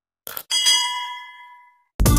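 Two quick click sound effects, then a single bright bell ding that rings out and fades over about a second: the notification-bell sound effect of a subscribe-button animation.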